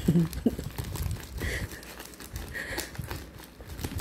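Scissors cutting through a tape-wrapped brown paper package, with the paper and plastic tape crinkling and rustling in small irregular snips and clicks.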